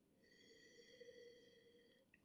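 Near silence, with a faint, drawn-out sniff lasting under two seconds as a wine glass of white wine is nosed.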